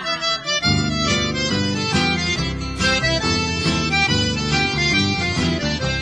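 Instrumental break in an upbeat sertanejo song: an accordion plays the lead over bass and rhythm, with the full band coming in about half a second in.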